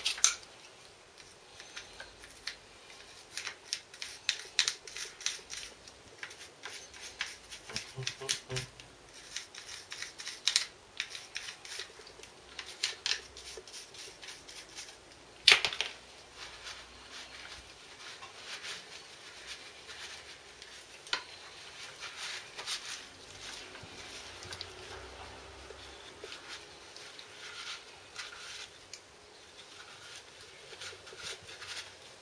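Gloved hands handling and cleaning a motorcycle front brake caliper: irregular small clicks, taps and scrapes of metal parts, with a sharper tap near the start and another about halfway through.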